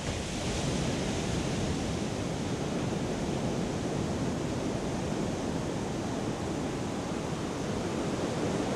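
Steady rushing of ocean surf, a wave ambience with no music over it yet.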